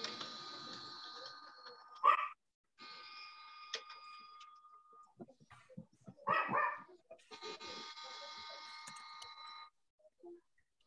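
A dog barking in the background over a video-call line: a single bark about two seconds in, and a short burst of barks around six and a half seconds. Between them a faint steady hiss with a thin whine cuts in and out.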